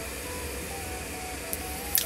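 A steady low hum over background hiss, with a faint thin wavering tone drifting in the middle.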